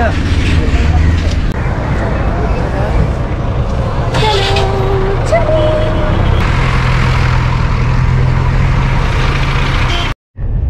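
Busy street traffic with buses and trucks around, engines running with a steady low hum.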